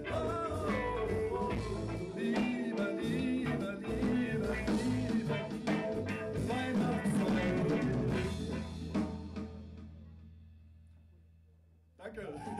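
Live rock band playing with singing and drums, ending its song about nine seconds in; after the last hit a single low note rings on and fades away.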